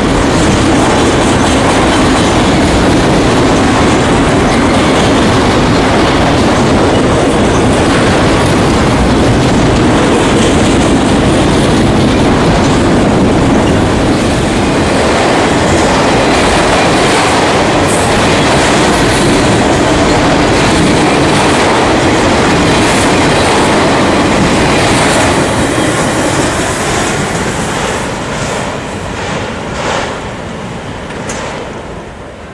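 Freight train of autorack cars rolling past close by, its steel wheels running loud and steady on the rails. Near the end the noise fades as the last car passes and moves away.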